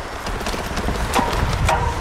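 Wind buffeting the microphone and bicycle rolling noise while riding, with a couple of sharp clicks about a second in.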